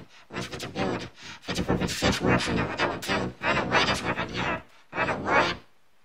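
A person talking in short bursts, with words too unclear to make out. The talk stops about five and a half seconds in, leaving only a faint hiss.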